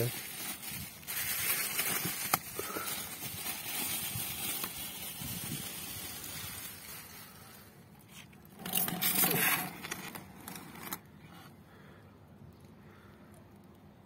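Clear plastic bag crinkling and rustling as it is lifted off a bucket, with a louder burst of crinkling about nine seconds in, then quieter.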